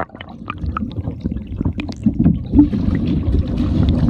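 Pond water gurgling and rushing around a camera microphone held underwater: a muffled, low rumble with scattered small clicks and bubbles.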